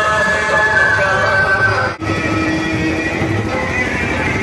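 Loud music played through truck-mounted loudspeakers, with a wavering melody line held over a steady low accompaniment. It drops out for an instant about halfway through.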